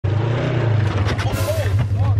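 Polaris RZR side-by-side engine running with a steady low drone, heard from inside the open cab. A voice calls out briefly about one and a half seconds in.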